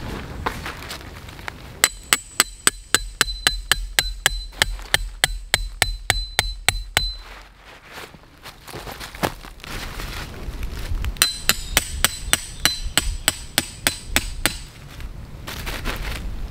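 Metal tent peg being hammered into the ground: quick, even strikes about four a second, each with a high ringing ping. The strikes come in two runs, with a short pause between them a little before the middle.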